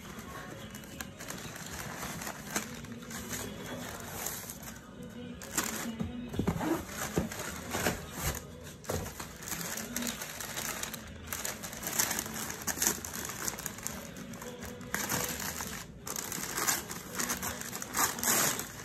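Cardboard and paper wrapping crinkling, rustling and tearing in irregular bursts as a mailed package is pulled from its box and unwrapped.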